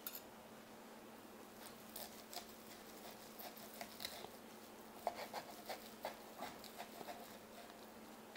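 Faint, irregular scrapes and small ticks of a steel table knife sawing through a cooked steak, the blade catching on a wooden cutting board while a fork holds the meat.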